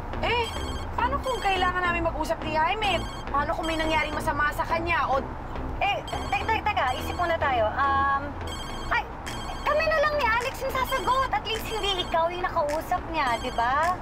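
A mobile phone's ringtone rings on through the whole stretch over women's voices: an incoming call going unanswered.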